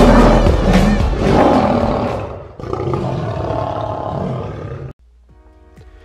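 Lion roar sound effect laid over loud music, dying away after about two seconds and followed by a quieter stretch. About five seconds in it cuts off suddenly, leaving faint, sustained music notes.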